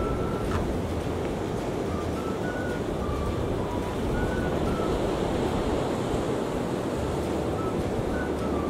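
Steady wash of ocean surf, with wind noise on the microphone.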